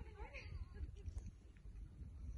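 Wind rumbling on the microphone, with a short wavering, gliding call in the first second whose source cannot be told.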